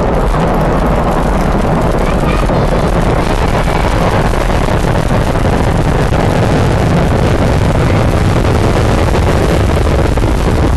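Soyuz rocket engines during ascent: a loud, steady, rumbling noise heavy in the low end, with crowd voices mixed in.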